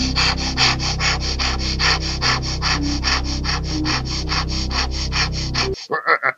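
Rapid cartoon sawing: a hand saw rasping through a tree trunk at about seven strokes a second, over the music score. It cuts off suddenly near the end.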